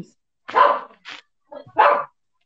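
A pet dog barking a few times in short bursts.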